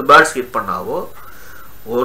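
A man talking in a small room. There is a short pause a little past the middle, with a faint arched tone during it.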